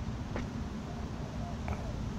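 Steady low background of shallow water running down a concrete drain channel, with wind rumbling on the microphone.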